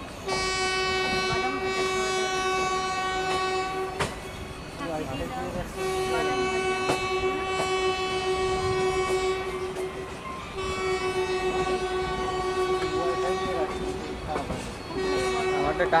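Electric locomotive's air horn sounding repeated long blasts on one steady high note, heard from a coach further back along the moving train over the running noise of wheels on track. Three blasts of about four seconds each with short gaps between them, and a fourth starting shortly before the end.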